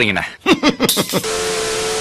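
Quick, bending voice sounds, then about a second in a steady TV static hiss with one held tone underneath: a glitch transition sound effect.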